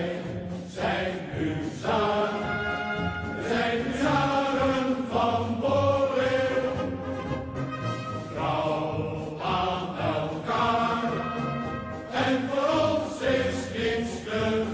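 Soundtrack music of choral singing: several voices sing long held notes in phrases a few seconds long.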